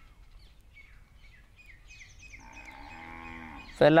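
Faint tapping and scratching of a stylus writing on a tablet screen, then a long, low drawn-out vocal sound that swells for about a second and a half before cutting off.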